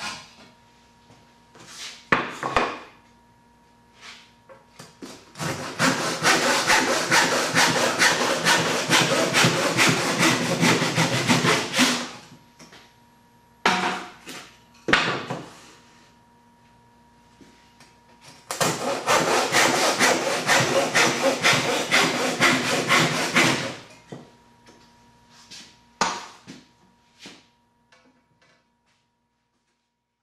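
A handsaw cross-cutting wood held in a bench hook: two bouts of quick back-and-forth strokes, the first lasting about seven seconds and the second, starting about halfway through, about five. Sharp knocks of wood pieces being handled and set on the bench come before, between and after the cuts.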